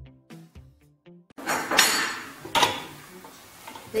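Background music, then clattering and clinking of equipment parts being handled, with two louder clinks about two seconds in and again just over half a second later.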